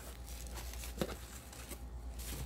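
Faint rustling of tissue paper against a cardboard shipping box as wrapped items are handled, with a small tap about a second in, over a steady low hum.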